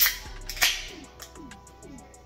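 Aluminium can of carbonated gin cocktail cracked open by its pull tab: a sharp click, then about half a second later a short hiss of escaping gas.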